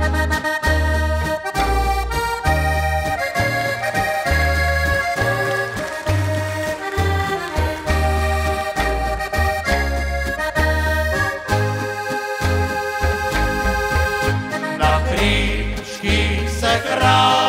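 Button accordion playing a lively folk melody, with a double bass plucking a bass note on every beat and an acoustic guitar playing chords. Male voices come in near the end.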